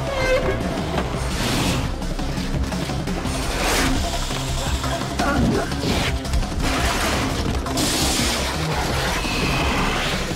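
Film soundtrack of fast chase music with sound effects laid over it, including several brief rushing sweeps and crashes.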